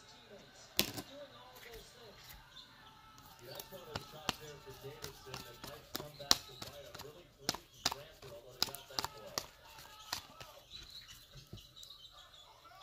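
Trading cards in clear plastic holders being handled and shuffled, giving scattered sharp plastic clicks and taps. Faint voices murmur underneath.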